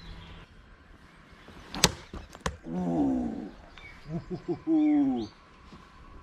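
A steel throwing knife hits a coconut on a wooden target with one sharp strike a little under two seconds in, slicing through it into the wood, and a lighter click follows. Two drawn-out calls that fall in pitch come after.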